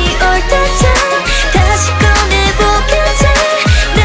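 K-pop girl-group song playing: a female vocal line over a steady deep bass and deep kick-drum hits that drop in pitch about twice a second.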